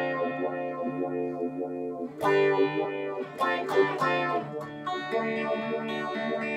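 Semi-hollow-body electric guitar played through effects in a tremolo piece: sustained ringing chords, a hard strum about two seconds in, then a quicker run of notes before the chords settle again.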